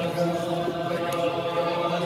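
A large group of men singing a slow melody together in unison, holding long, steady notes.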